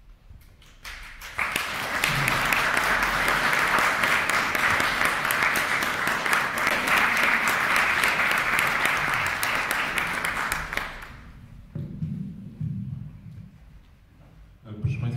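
Audience applauding: dense clapping that starts about a second in, holds steady, and dies away about three seconds before the end, leaving a few quieter low sounds.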